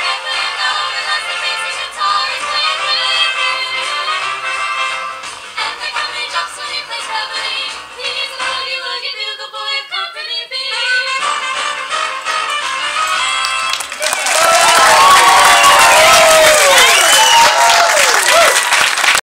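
Three young women's voices singing a close-harmony trio a cappella into microphones, up to the song's last chord. About fourteen seconds in, louder clapping and cheering with high whoops break out as the song ends.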